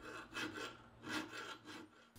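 A hand file rasping against cast bronze in a few slow, separate strokes while a taper is filed into a hatchet head's eye.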